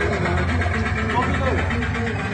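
Indistinct voices of people talking in a room, over a steady low hum.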